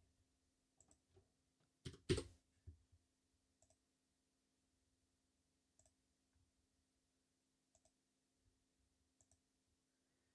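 Faint computer keyboard keystrokes and mouse clicks, sparse and spaced out, with a louder pair of keystrokes about two seconds in. A faint steady hum lies underneath.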